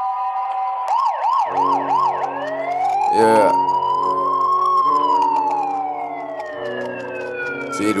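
Police siren sound effect opening a trap beat: a few quick yelps, then one long wail that rises slowly and falls away, over low sustained synth chords that come in about a second and a half in. A brief loud swoosh cuts in about three seconds in.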